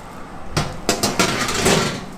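Foil-lined metal baking tray knocking and scraping against an oven rack as it is handled in an open oven, a run of clattering knocks from about half a second in.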